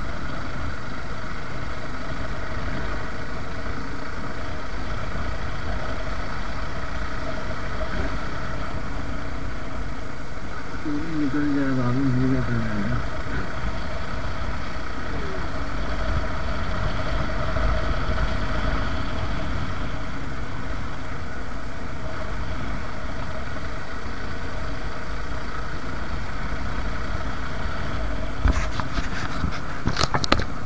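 Suzuki Gixxer's single-cylinder engine running steadily while riding at moderate road speed, with road noise. A brief falling tone comes about eleven seconds in, and a few sharp clicks near the end.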